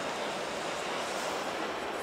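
Steady, even hubbub of a busy exhibition hall: distant crowd chatter and hall noise blended into one wash, with no single sound standing out.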